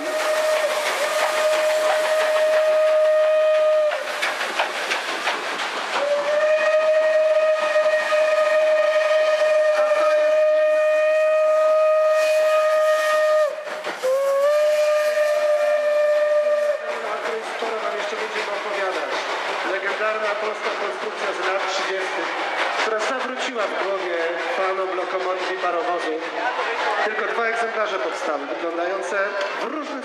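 Steam locomotive whistle blowing three long blasts on one steady note: the first about four seconds long, the second about seven, and the third about three, which starts a little low and rises back to pitch. After the whistle stops, a jumble of voices and railway noise.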